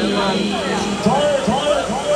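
Several riders on a swinging pendulum thrill ride screaming and shouting at once, their high rising-and-falling cries overlapping over a steady fairground din.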